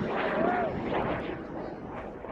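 Roar of a large hobby rocket's Aerotech M1939 solid-fuel motor fading as the full-scale WAC Corporal replica climbs away, with spectators' voices over it.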